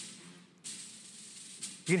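Faint, tinny music playing through a pair of Toshiba Air Pro wireless earbuds held up to a microphone: a hissy drum roll, with a short break about half a second in.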